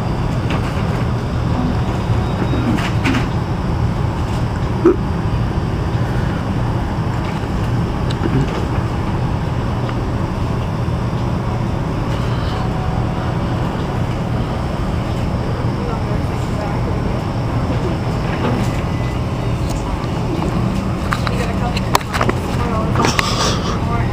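A steady low rumble of store background noise, with a few faint knocks from the camera being handled close against a jacket.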